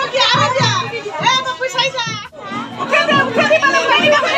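Several voices, children's among them, talking and calling out over one another, with a brief lull a little past two seconds in.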